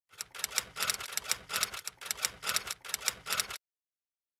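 Typewriter-style typing sound effect: a quick run of key clicks, several a second, that stops abruptly about three and a half seconds in.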